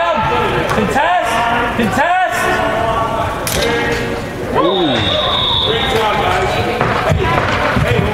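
Shouting voices of players and spectators during an indoor box lacrosse game, with a sharp knock about three and a half seconds in and a steady high whistle blast of about a second and a half midway through.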